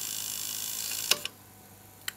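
Tandberg TCD-310 cassette deck's direct-drive reel motors winding tape at fast speed, a steady whir. About a second in there is a click and the whir stops as the tape reaches its end.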